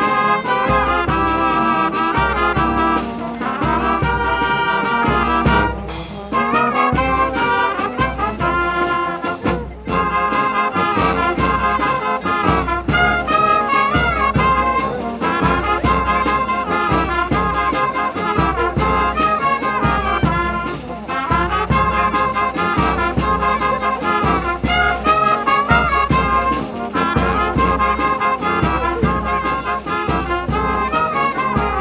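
A youth wind band of brass and clarinets, with sousaphones and a bass drum, playing a piece with a steady beat.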